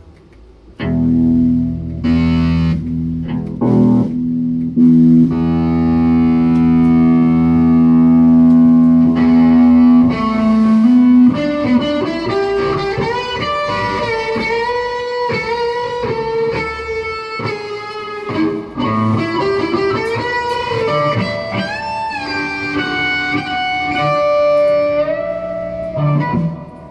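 Rock jam led by electric guitar. It comes in about a second in with one long held note lasting most of the first ten seconds, then moves to a melodic lead line with bends and slides.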